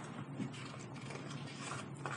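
Faint rustling and a few light ticks of paper sheets being handled.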